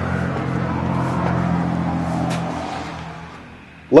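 An engine running steadily, a low, even hum that fades away over the last second or so.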